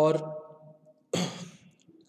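A man's voice holding one drawn-out word, then a short, breathy sound about a second in, like an audible breath or sigh.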